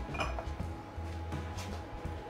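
Soft background music with a low steady bass, and a light glassy clink just after the start as the glass olive oil bottle is set back on the shelf.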